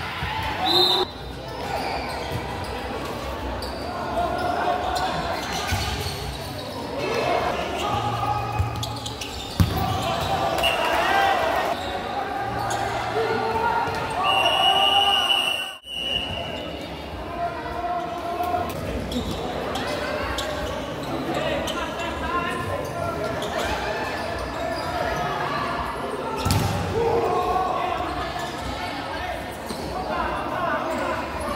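Futsal ball being kicked and struck on an indoor court, echoing in a large sports hall, with indistinct shouting from players and spectators. The sound drops out briefly about halfway through.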